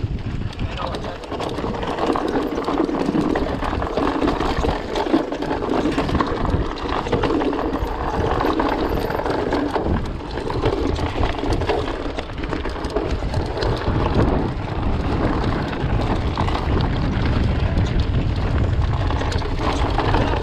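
Mountain bike ridden down a rocky trail: steady wind noise on the microphone, tyres crunching over loose rock, and the bike rattling and clattering throughout.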